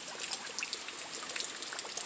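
Steady rain falling into rainwater that is flooding a driveway: an even hiss dotted with many small drop splashes.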